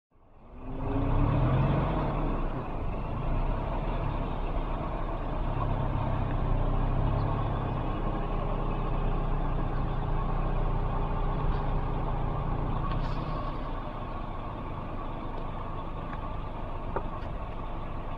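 A motor vehicle's engine running steadily, a low even hum that fades in over the first second.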